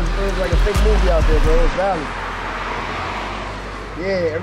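Street noise with a steady traffic hiss. A voice is heard over a low rumble of wind on the microphone for about the first two seconds.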